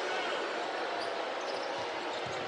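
Arena crowd noise, with a basketball being dribbled on the hardwood court in a few low thumps.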